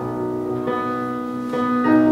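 A live band playing a song's instrumental introduction, with an electric bass guitar under sustained chords that change several times.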